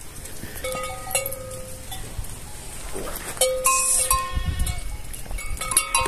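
Goats bleating in a pen: several short, steady-pitched bleats from different animals, with a few light clicks between them.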